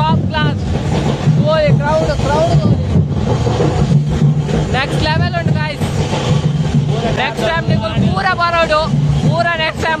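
Loud festival din: a high, wavering singing voice rising and falling in repeated phrases, over a steady low rumble.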